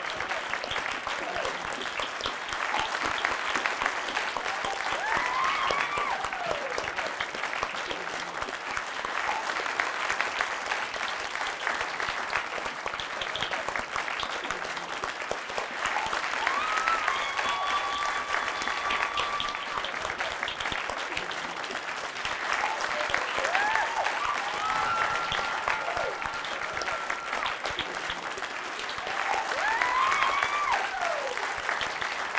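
Audience applauding steadily, with a few voices calling out over the clapping now and then.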